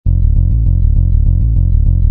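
Intro music that starts abruptly: a fast, even pulse of repeated low bass notes, about six or seven a second.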